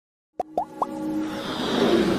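Intro sound effects: after a moment of silence, three quick upward-sliding plops, then a rising whoosh with held tones that builds in loudness.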